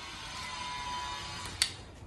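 Quiet room with a faint steady tone through the middle and a single sharp click about one and a half seconds in.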